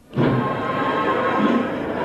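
Old, muffled procession recording: crowd noise with band music playing underneath. The sound cuts out for an instant at the very start, then resumes.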